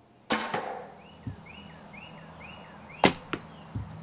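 Two traditional bow shots, each a sharp snap of the string on release followed a quarter-second or so later by the arrow striking the target; the second shot, about three seconds in, is the loudest. Between them a bird chirps the same short note five times.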